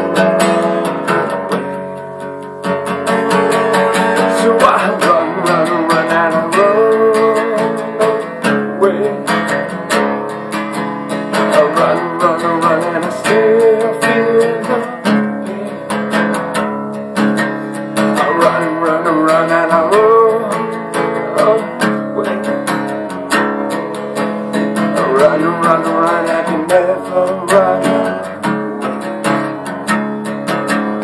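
Acoustic guitar being strummed without a break, playing a song's accompaniment.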